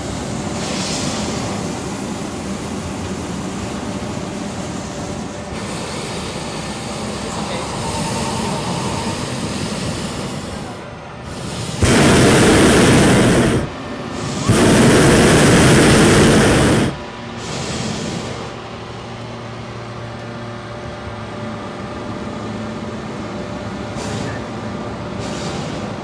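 Hot-air balloon's propane burner firing in two loud blasts just past the middle, the first about a second and a half long and the second about two and a half, over steady background noise.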